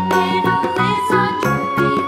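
Continuous music with quick, pitched notes changing several times a second over a steady rhythm.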